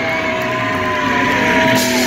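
Electric guitar played loud through an amplifier, holding long notes that waver and slide in pitch. A wash of cymbals comes in near the end.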